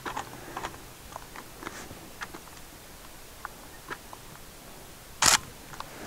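Faint, irregular small clicks scattered over the first few seconds, with one louder, short rush of noise about five seconds in.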